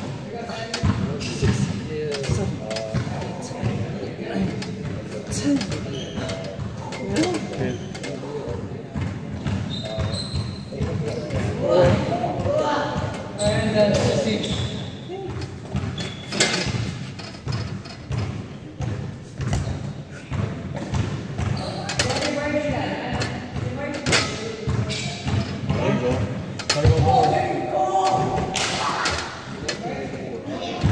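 Indistinct voices of several people in a large, echoing hall, broken by frequent short thuds and knocks.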